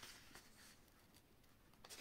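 Near silence, with faint rustling of paper pages being handled.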